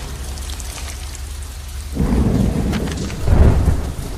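Steady rain with rolling thunder: a low rumble swells about two seconds in and peaks again near the end.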